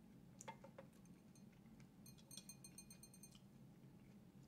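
Near silence: room tone with a few faint clicks from food and utensils being handled, and a faint rapid high ticking a little past halfway.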